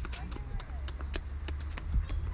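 A small child's quick running footsteps slapping on a concrete path, a few irregular steps a second, over a low rumble.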